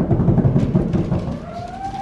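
A drum roll, a dense low rumble, builds to the reveal, then a single rising tone comes in during the last half second.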